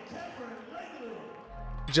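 Background music under a highlight reel; its bass line drops out and comes back about a second and a half in.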